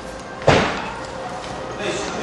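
A single loud bang about half a second in, like a slam, dying away over about half a second.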